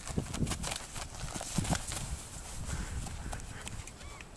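Irregular thuds and scuffs of rugby players running and moving on a grass field.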